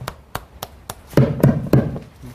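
Light tapping, four sharp taps about a third of a second apart, followed by three loud dull knocks close to the microphone.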